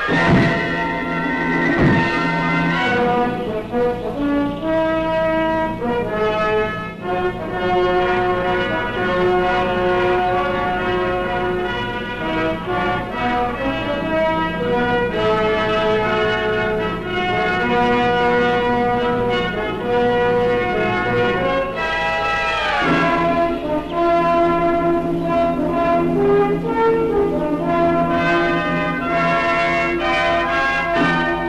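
Orchestral background music led by brass, held notes shifting from chord to chord, with a sharp accent at the start and a sweeping run about three-quarters of the way through.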